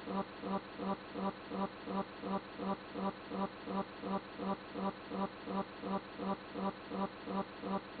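A buzzing sound pulsing evenly about three times a second, unchanged throughout.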